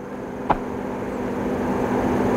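A distant engine drones steadily, growing gradually louder, with one sharp click about half a second in.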